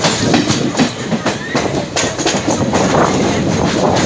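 Passenger train running on the track, heard from aboard: a loud steady rumble with an uneven clatter of wheels over rail joints.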